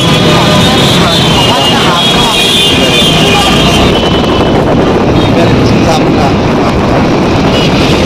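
Busy city road traffic heard from a moving vehicle: engines and road noise from buses, trucks, cars and motorcycles, with voices mixed in.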